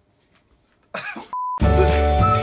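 Near silence, then about a second in a short burst of a person's voice, a brief steady beep, and loud music with heavy bass cutting in right after it.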